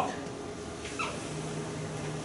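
Quiet room tone in a lecture room, with one brief high squeak about a second in and a faint low steady hum coming in just after it.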